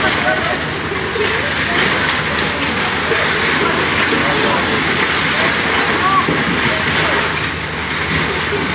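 Continuous rumbling and crackling of concrete and rubble crumbling and falling as a cracked building's broken ground floor gives way during demolition, with indistinct voices in the background.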